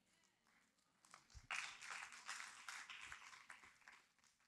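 Faint, scattered clapping from an audience, starting about a second and a half in and lasting about two seconds.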